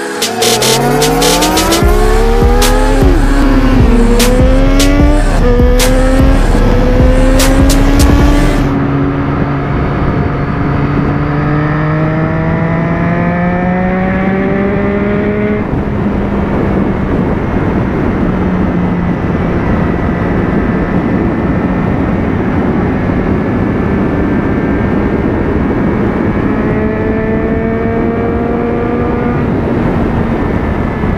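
Intro music with a beat, over an engine revving up and down, for the first eight seconds or so. Then the music ends and a motorcycle engine is heard from on board, its pitch climbing slowly as it accelerates. There is a gear change about fifteen and a half seconds in, after which it holds a nearly steady cruise with wind and road rush.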